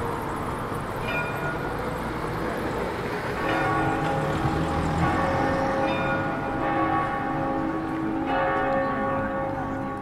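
Church bells ringing: a few separate strokes at first, then from about three and a half seconds several bells overlap, their tones hanging on between strikes. Light traffic noise is underneath.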